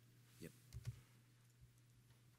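A brief spoken "yep", then a single sharp click a little later, with a couple of faint knocks, over a steady low hum; otherwise near silence.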